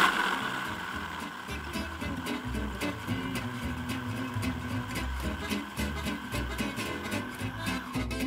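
Electric hand blender with a chopper-bowl attachment running steadily, pureeing tomato sauce with a little added water; its steady motor whine cuts off near the end. Background music plays along with it.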